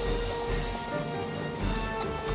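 Background music with a steady beat and held notes, over a bright hiss.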